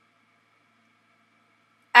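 Near silence: only a faint, steady high hum in the background, with a woman's voice starting right at the end.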